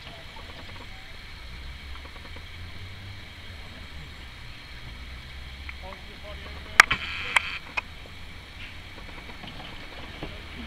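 Low, steady hum of a coaching launch's outboard motor running slowly. About seven seconds in come two sharp knocks with a brief higher noise between them.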